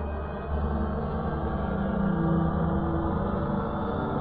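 Film background score of low, sustained droning tones with a gong-like ring, growing louder about half a second in.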